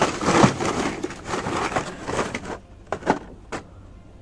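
Hot Wheels cars in plastic blister cards clattering and crackling against each other as they are rummaged through in a bin: a dense run of rustling and clicks for about two and a half seconds, then a few single clicks as one card is pulled out.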